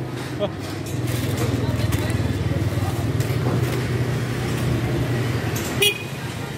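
Busy street-market ambience: background chatter of shoppers and vendors over a steady low hum of motor traffic, with a brief sharp sound near the end.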